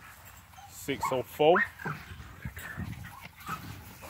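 American Bully puppies yelping and whining as they play-wrestle: a few short, rising yelps about a second in, then quieter low noises.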